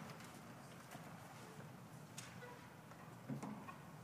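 Very quiet concert hall between pieces: faint rustling with a few small clicks and knocks, the loudest a soft low knock a little past three seconds in.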